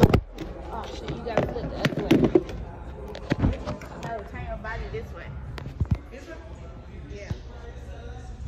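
A scattering of sharp knocks and clacks, loudest in the first half and again once near six seconds, over faint background voices in a busy room.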